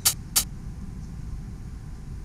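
Low, steady rumble of outdoor traffic noise, with two sharp clicks in the first half-second.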